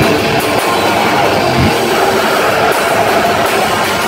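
Heavy metal band playing live, loud and dense, with distorted electric guitars over drums.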